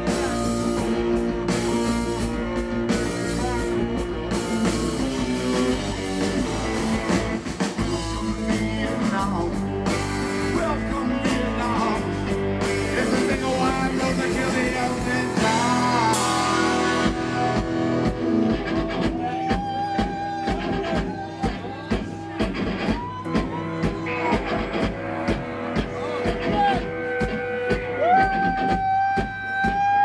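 Live rock band playing: distorted electric guitars, bass and drum kit, with a singing voice. In the second half the drums settle into regular hits while long held high notes ring out toward the end.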